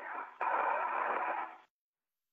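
Open space-to-ground radio channel hissing, with a steady hum and a sharp click just under half a second in. The hiss cuts off abruptly to dead silence shortly before the end as the transmission drops.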